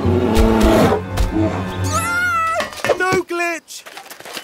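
Cartoon bear roaring, low and loud, for about the first second. It is followed by high, wavering cries and a few short falling yelps from the small cartoon robots it frightens.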